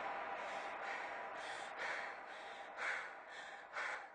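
Audience applause dying away, with short breathy sounds, gasps or panting, coming about twice a second over it.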